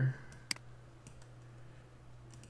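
A single computer mouse button click about half a second in, over a faint steady low hum.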